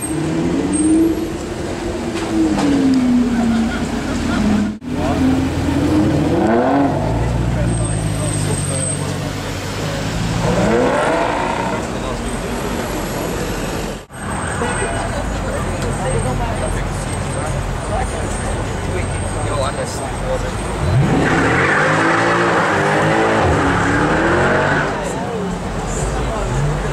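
Mercedes C63 AMG's 6.2-litre V8 through an aftermarket IPE exhaust, revved again and again, pitch climbing and falling with each blip. Near the end the tyres squeal in a burnout while the engine is held high in the revs.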